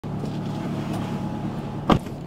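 A steady low hum, then a car door slamming shut near the end, the loudest sound.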